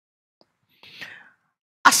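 A pause in a man's speech: a near-silent gap with a soft, brief breathy sound about a second in, then his speech starts again just before the end.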